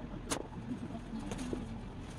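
A slingshot shot striking a cardboard box target padded with jeans: one sharp smack about a third of a second in, then a fainter tap about a second later, over a steady low rumble.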